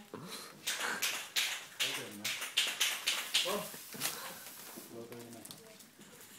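Young people laughing in breathy, snickering bursts, two or three a second, with a few short voiced giggles, fading toward the end.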